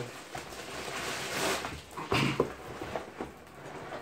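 A plastic mailing bag rustling and crinkling as a cardboard shipping box is pulled out of it, in irregular surges that are loudest around the middle.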